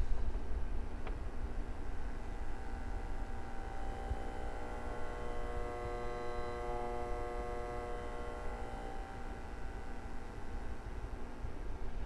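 Power transformer of a Carver MXR-2000 receiver's magnetic-field power supply humming under load. While the amplifier is driven with a 1 kHz sine wave, it sings along at that frequency: a set of steady tones that fades in about four seconds in and dies away near ten seconds, quieter in some parts and louder in others.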